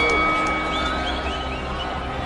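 Boxing arena crowd noise, a steady hum of the audience with scattered voices calling out.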